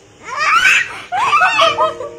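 A baby laughing in two bursts, the second starting about a second in.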